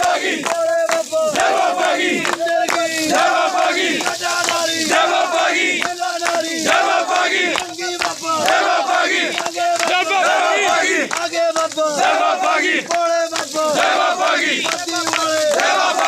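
A crowd of men loudly shouting a devotional chant together, with many voices overlapping and no pauses.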